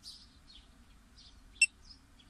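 Small birds chirping, short high chirps every half second or so. About one and a half seconds in comes one much louder, very short, sharp high chirp.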